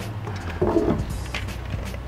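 A few light clicks and knocks of hard plastic parts as an electronic hearing-protection headset and its helmet-mount pieces are handled, over a low steady background music bed.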